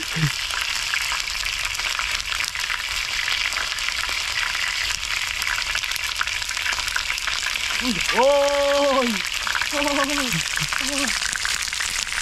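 Chicken wings deep-frying in a pan of hot oil on a gas burner: a steady, dense crackling sizzle with the fat spitting hard. The cook puts the spitting down to rainwater getting into the fat.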